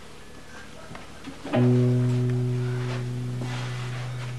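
Electric guitar: one low note struck about a second and a half in, ringing on and slowly fading. Before it, only faint room noise.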